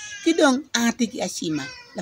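An elderly woman speaking in Luo, her voice rising and falling in pitch between short breaks.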